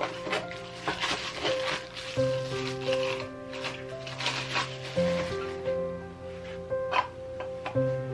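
Background music with held notes, over the crinkling of a thin plastic bag being pulled off a clear acrylic canister during the first half, and a light click about seven seconds in as the canister is handled.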